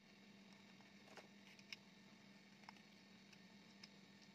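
Near silence: a faint steady hum with a few small, faint clicks from handling the plastic front panel of a radio with a small screwdriver.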